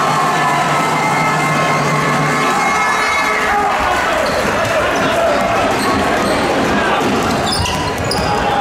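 Live basketball game in an echoing gym: a loud, busy mix of players' and spectators' voices, with a basketball bouncing on the wooden court and short sharp knocks near the end.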